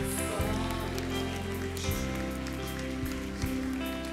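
Soft, sustained chords from a worship band's keyboard, changing to a new chord about two seconds in, over a steady hiss of crowd noise.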